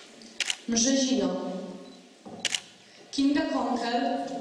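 Camera shutter clicking twice, about half a second and two and a half seconds in, with a voice speaking between and after the clicks.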